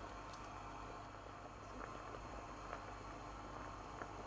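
Water with basmati rice boiling in a metal pan, heard faintly as a steady low bubbling hiss, with a couple of faint ticks.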